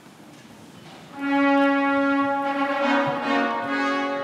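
Low room noise, then brass music starts suddenly about a second in: one long held note, with further notes joining it toward the end.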